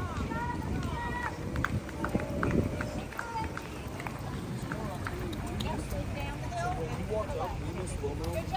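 Indistinct voices of people on a busy street, with the low rumble of walking on a handheld phone's microphone.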